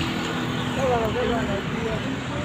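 Steady road traffic noise, with a person's voice talking under it.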